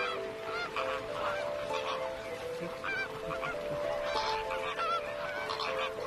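A flock of American flamingos honking: many short, overlapping goose-like calls, over background music with long held notes.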